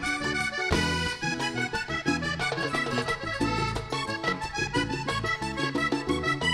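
Live vallenato band playing, led by a diatonic button accordion over bass guitar and percussion, with a steady rhythm.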